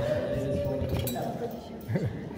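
A single sharp clink of glassware about a second in, over people's voices.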